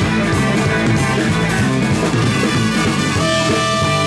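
Live blues band playing an instrumental passage: electric guitar over electric bass and drum kit, the bass stepping through its notes. Near the end the guitar holds one long note.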